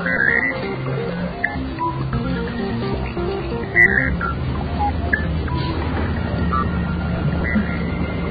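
Background music: a melody of short stepping notes over a steady low bass, with one sharp click a little before halfway.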